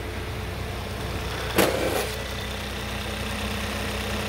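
2018 Kia Stinger's 2.0-litre turbocharged four-cylinder engine starting about one and a half seconds in, with a brief loud flare, then settling into a steady idle.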